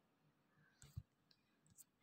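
Near silence, with a few faint short clicks; the clearest comes about a second in.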